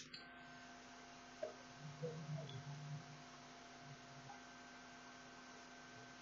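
Very quiet steady electrical hum with faint hiss from the recording chain, with a few faint soft sounds between about one and a half and three seconds in.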